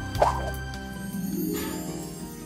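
Background music with sustained held notes, and a brief blip-like sound effect about a quarter second in.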